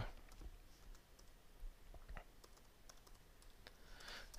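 Faint, irregular keystrokes on a computer keyboard: a handful of soft clicks as login details are typed in.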